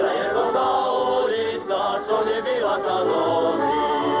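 A group of voices singing a lively Slovak folk song together.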